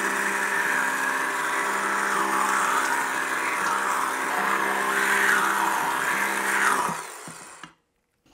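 Handheld immersion blender running steadily, its motor humming as the blade churns thin liquid in a steel pot to blend and thicken a stew sauce. The motor winds down and stops about seven seconds in.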